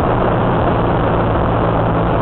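Honda Rebel 250's small parallel-twin engine running at a steady, unchanging pitch while the bike is ridden, with an even rush of wind and road noise over it.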